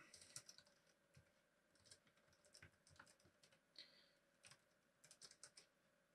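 Faint computer keyboard typing: scattered, irregular soft key clicks.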